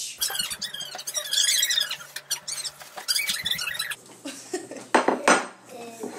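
Plates and cutlery being handled at a table: a run of clattering and clinking, then two louder knocks about five seconds in.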